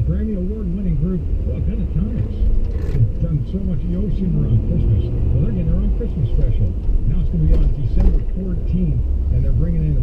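A person talking, not clearly enough to make out, over the steady low rumble of a car driving at slow speed, heard from inside the cabin.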